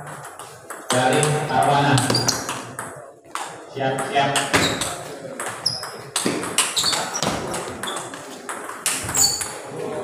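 Table tennis rally: the ball clicking sharply off the paddles and the table in quick succession, mostly in the second half, with voices in the hall.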